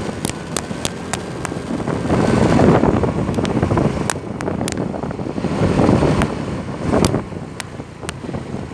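Wind buffeting the microphone on a moving bike, a rough rushing that swells and fades, with a dozen or so sharp clicks scattered through it.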